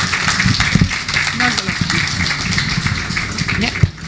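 Audience applauding, with a few voices over the clapping, which stops near the end.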